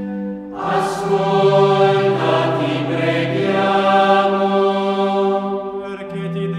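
Background music: a choir chanting a sacred song in long held notes that shift pitch every second or two.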